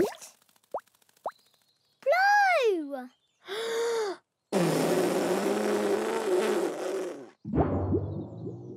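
Cartoon sound effects of a giant soap bubble being blown from a hula hoop: a swooping rise-and-fall whistle and a short held tone, then a long airy blowing sound with a wavering tone for about three seconds. It ends in a sudden boing-like wobble that slides down and fades as the bubble forms.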